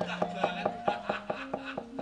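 Quick run of wooden knocks, about six or seven a second: the dalang's cempala mallet rapping on the wooden puppet chest (kotak) to accompany the puppet's movement. Faint sustained gamelan tones hang underneath.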